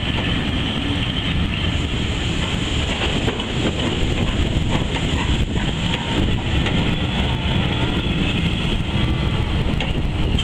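Passenger coaches rolling past close by on the rails: a steady rumble and rattle of wheels, with a faint squeal now and then.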